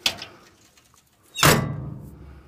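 A truck's metal side storage compartment door being shut: a sharp knock at the start, then a loud slam about a second and a half in, followed by a low rumble dying away.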